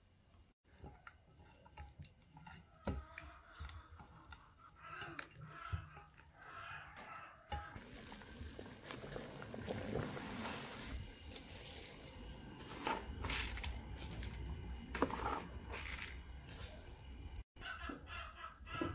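A large stainless steel pot of water at a rolling boil, bubbling and rushing steadily for most of the second half, with a few sharp ticks over it. Before it come light handling clicks as salt is sprinkled by hand.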